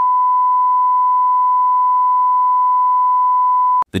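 A single steady electronic beep tone, one high pure pitch held unchanged for nearly four seconds, then cut off suddenly with a click.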